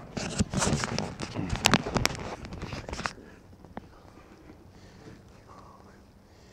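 Rustling and clicking of things being handled close to the microphone for about three seconds, then quieter, with a single click near the four-second mark.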